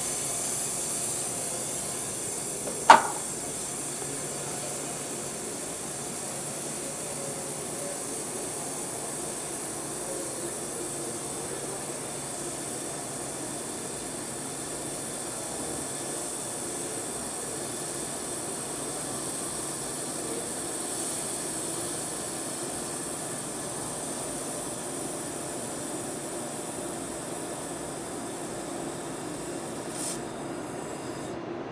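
IPG LightWELD XR handheld laser welder fusion welding thin aluminium without filler, making a steady hiss. One sharp click comes about three seconds in.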